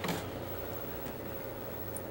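Faint, steady low electrical hum with a light hiss. A short rustle comes right at the start.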